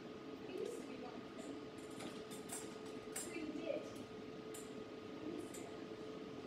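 Quiet stage room tone with a steady electrical hum, scattered faint ticks and creaks, and a faint voice now and then.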